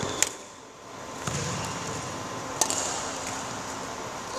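Two crisp badminton racket strikes on a shuttlecock, about two and a half seconds apart, in a rally across the net.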